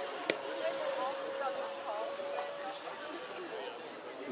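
Zephyr RC jet's 90 mm electric ducted fan in flight, a steady high whine that falls slightly in pitch near the end. A single sharp click just after the start, with faint voices in the background.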